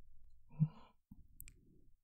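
A man's soft, breathy sigh with a brief low hum at its peak, followed by faint mouth clicks.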